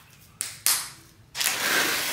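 A sharp slap of raw ground beef being pressed between the palms into a patty, about half a second in. Then, from about a second and a half in, a steady rustling hiss of plastic cling wrap being pulled off its roll.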